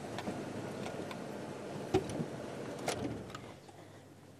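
Game-drive vehicle's engine running steadily, with a couple of sharp clicks; the engine noise falls away near the end.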